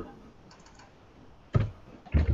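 Computer keyboard typing heard over a video call: a few light, quick key clicks, then a single louder tap near the end.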